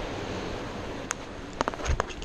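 Steady wind and ocean surf noise, with a few sharp scuffs and taps of shoes stepping on a sandstone cliff ledge in the second half, the loudest near the end.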